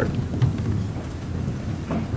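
Room noise in a banquet hall: a steady low rumble under an even hiss, with a few faint scattered clicks.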